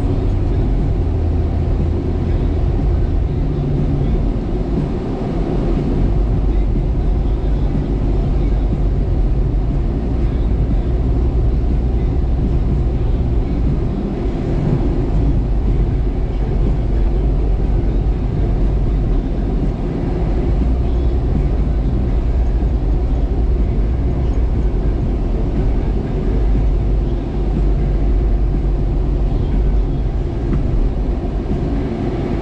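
A Jeep's engine and road noise heard from inside the cab while driving: a steady, muffled low rumble with no distinct events.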